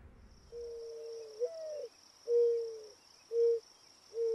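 Mourning dove cooing: one long coo that lifts in pitch partway through, then two shorter, level coos.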